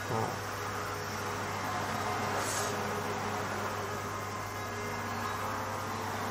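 A pause without speech: a steady low background hum with faint room noise. There is a brief faint sound just after the start.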